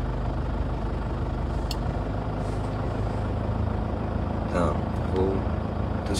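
Steady low hum of a car, heard from inside the cabin, with one sharp click about two seconds in.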